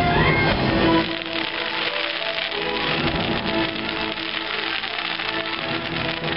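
Show music with long held notes, mixed with a dense crackling of glittering fireworks bursts. The music drops in level about a second in.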